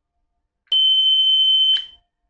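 Small electric alarm buzzer, switched by a relay from a coolant expansion-tank float sensor, gives one steady, high-pitched beep about a second long, starting partway in. It sounds because the float has been dropped to simulate the coolant level falling: the low-coolant warning going off.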